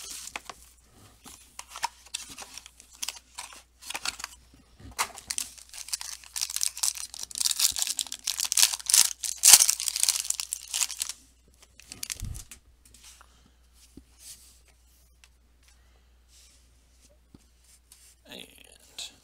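Plastic wrapping of a sealed trading-card box torn open and crumpled by hand. The crackling is loudest a little past the middle, then dies down to a few faint clicks and rustles for the last several seconds.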